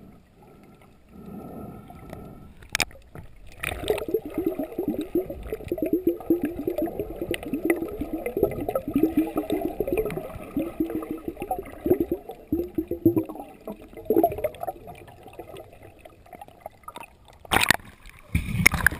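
Underwater bubbling and gurgling picked up by an action camera held below the surface, a dense run of short bubble sounds from about four seconds in until about fourteen seconds. A loud splash just before the end as the camera comes up to the surface.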